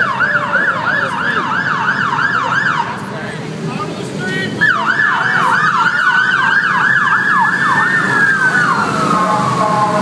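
Police motorcycle sirens. One siren yelps in fast sweeps, about four a second, stops after about three seconds and starts again a second and a half later. From about halfway a second siren wails alongside in one slow rise and fall, dropping in pitch near the end.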